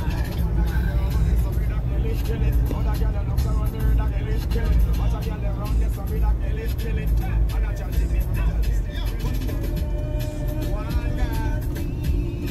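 Steady low rumble of a moving car heard from inside the cabin, with a voice and music playing over it.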